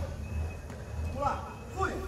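Short, indistinct voices of people calling out, over a steady low hum.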